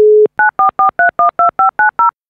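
Telephone dial tone, a single steady tone that cuts off about a quarter second in, followed by touch-tone (DTMF) keypad beeps dialing a number: short two-note beeps in quick succession, about five a second.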